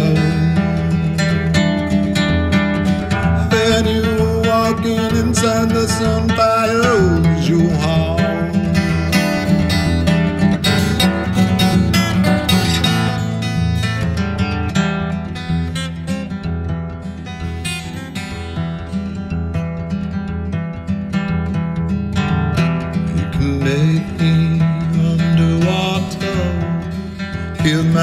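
Steel-string acoustic guitar strummed steadily, with a man singing long, drawn-out notes for a few seconds near the start and again near the end; in between the guitar plays on its own, a little softer.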